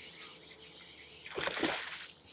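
Water splashing as a hooked Australian bass thrashes at the surface beside the boat, in two or three quick splashes near the end.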